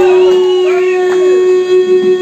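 Wolf-like howling from voices that glide up and fall away, over a steady held note from the stage's amplified instruments.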